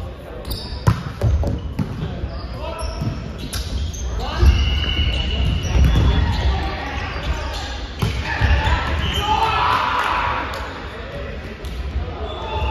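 Indoor volleyball rally in a reverberant hall: the ball served and struck with sharp smacks, shoes squeaking on the wooden court, and players calling out, loudest about ten seconds in.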